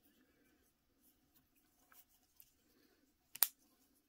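Faint handling of a thin nylon cord, with one sharp metallic click about three and a half seconds in as a small metal clip is threaded through the loops of a lark's head knot.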